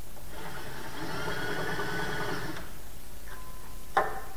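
Cordless drill motor running steadily for about two seconds, then stopping. A single sharp click comes at the very end.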